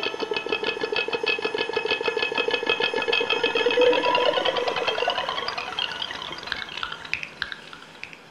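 Electric guitar played through a Line 6 Helix LT shimmer patch: a wash of sustained notes chopped into a rapid fluttering pulse, with pitches rising about three to four seconds in. The sound then slowly fades away near the end.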